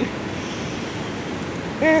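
River water rushing steadily past the bank, a continuous even noise.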